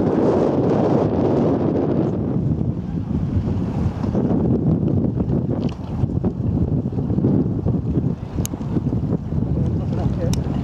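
Wind buffeting the microphone: a steady, gusting low rumble of wind noise.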